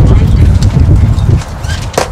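Wind buffeting the microphone: a heavy low rumble that drops away about a second and a half in, followed by a sharp knock near the end.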